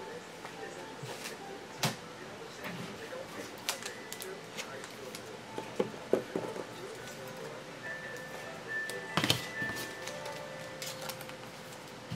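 Trading cards being handled on a table: scattered light clicks and taps, the sharpest about two seconds in and again near nine seconds, over faint steady background tones.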